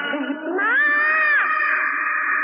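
A woman's high-pitched scream: it rises sharply, holds for about a second, then falls away.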